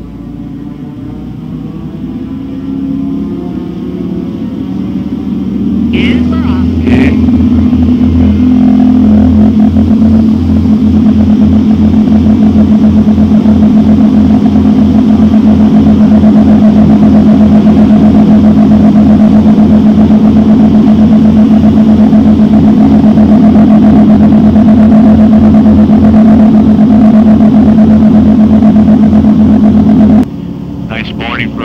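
Blimp's propeller engines running up to takeoff power, heard inside the gondola. They build over the first several seconds to a loud, steady drone as the airship lifts off. Two brief knocks come about six and seven seconds in.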